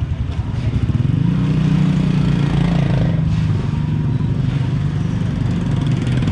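Small motorcycle engine running close by, getting louder about a second in and then holding steady.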